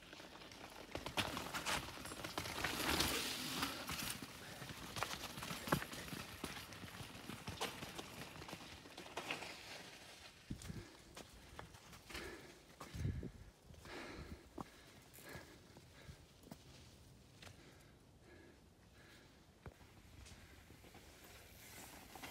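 Mountain bike rolling down a rocky dirt trail: tyres crunching and knocking over loose rocks and the bike rattling, an irregular run of clicks and knocks, loudest in the first few seconds and again around the middle.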